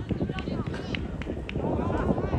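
Players calling out to each other on a football pitch, one drawn-out call near the end, over a steady low rumble, with a few short sharp ticks from play on the turf.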